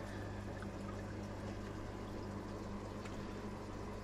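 Steady low hum of aquarium equipment with a light, even wash of moving water, as from running filters and pumps.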